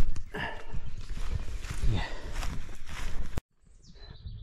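Footsteps walking over grass and dry leaf litter, a steady run of steps with the camera body-mounted and jostling. The sound cuts off abruptly a little before the end.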